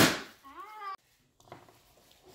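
A single loud, sharp crack right at the start, followed by a short voice-like call, then the sound cuts out abruptly about a second in.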